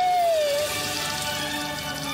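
Gratin bubbling and sizzling in an oven, a fine crackling hiss that sets in about half a second in, under soft background music.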